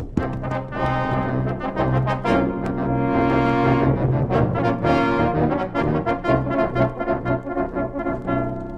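Brass-led orchestral music bridge, trombones and trumpets holding chords: the radio drama's musical transition between scenes. It eases down near the end.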